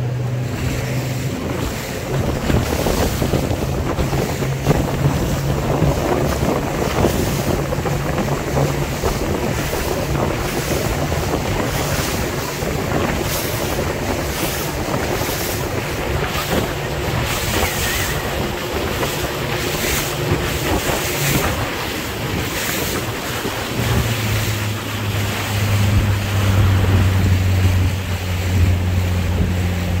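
Motor of an inflatable boat running steadily at speed over choppy water, with wind buffeting the microphone and water rushing past. Near the end the motor's hum drops lower and gets louder.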